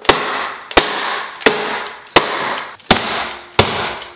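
A 2011 MacBook Pro laptop banged hard and repeatedly on a wooden table, about six loud bangs, evenly spaced about two-thirds of a second apart, each with a short ring after it. It is being knocked to shake loose a credit card stuck in it.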